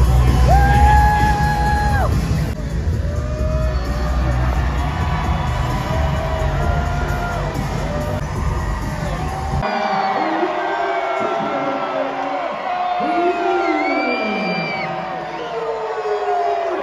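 Wrestler entrance music booming from the arena's PA with heavy bass, a crowd cheering and whooping over it. About ten seconds in the bass drops away suddenly, leaving crowd whoops and yells over fainter music.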